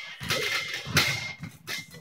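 Short, irregular bursts of vocal effort (grunts, hard breaths and brief exclamations) as a man pulls himself up over a pull-up bar, the loudest about a second in.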